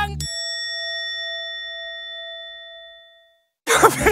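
A single bell-like 'ding' comedy sound effect, struck once and ringing out with clear high tones that fade away over about three seconds while the background music is cut.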